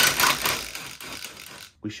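Cordless impact driver with a socket running on a bolt in a truck bumper's metal frame, loudest at first and dying away about a second and a half in.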